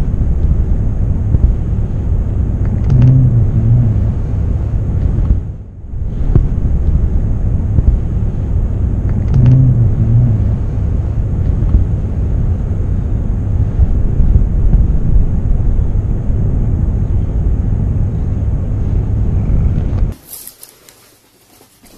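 A domestic cat purring right against the microphone: a loud, steady low rumble that breaks off briefly about five and a half seconds in.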